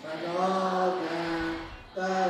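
One male voice intoning a Buddhist chant in long held notes; the pitch steps up about half a second in and the phrase fades out near the end.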